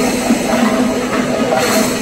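Kerala temple festival ensemble playing loud, dense drumming under a steady held note, with a cymbal-like clash near the end.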